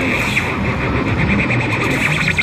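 Two electric guitars played live through amplifiers: a loud, dense, heavily effected jam.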